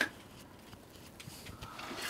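Quiet at first, then about three-quarters of the way through a faint steady hiss begins as the brew kettle's recirculation pump primes and wort starts to flow through the valve and hose.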